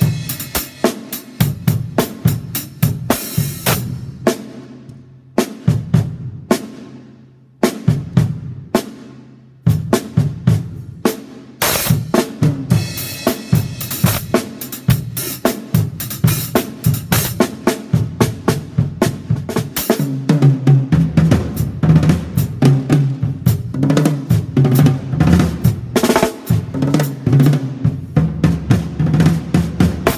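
Ddrum drum kit with Zildjian cymbals played with sticks: quick snare and tom strokes over bass drum, with cymbal crashes. A few short breaks in the first ten seconds, then louder, denser playing in the second half.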